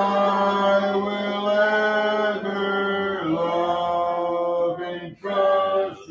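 Congregation singing a hymn a cappella, unaccompanied voices holding long notes. The singing breaks off briefly about five seconds in, then starts a new phrase.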